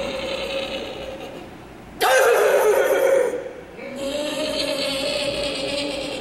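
A young woman's exaggerated, voiced deep breathing: long drawn-out breaths held on one steady pitch, with a louder, rougher breath about two seconds in and a short pause before the next long one.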